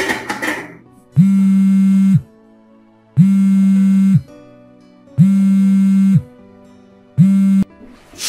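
A mobile phone ringing: four identical steady electronic rings about two seconds apart, the last cut short as the call is answered. A metal pot lid clatters briefly at the start.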